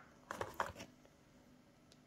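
Brief rustling and scraping in the first second as a coiled charging cable is lifted out of a cardboard box, then near silence.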